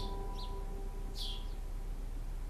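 A few short, high bird chirps, each falling in pitch, one near the start and another about a second later, over a steady low background hum. A held music chord fades out in the first second.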